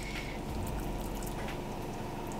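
Washing machine running as a steady low hum, with soft scrapes of a metal spoon scooping mashed roasted pumpkin.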